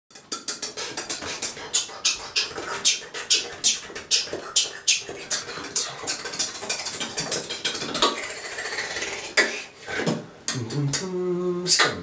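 Vocal beatboxing of drum sounds in a tiled shower: a fast run of sharp mouth clicks, about four or five a second, for the first few seconds, then looser mouth sounds, and a short hummed tone near the end.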